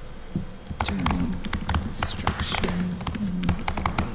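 Typing on a computer keyboard: a quick, irregular run of key clicks, with a few soft voice sounds among them.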